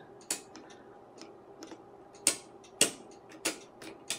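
Detent clicks of a Tektronix 475 oscilloscope's TIME/DIV rotary switch turned step by step through its sweep-speed settings for the B delayed sweep: about seven sharp clicks at uneven spacing, the two loudest a little past the middle.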